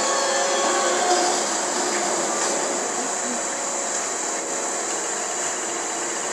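Steady hiss from the television recording, with the last held notes of the song's music fading out in roughly the first second and a half.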